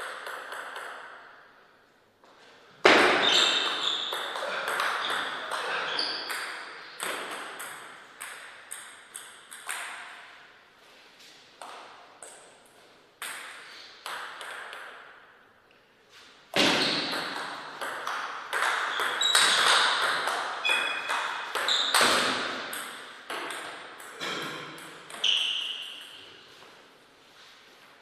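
Table tennis ball clicking off paddles and table in two fast rallies: one begins about three seconds in, the other about sixteen seconds in.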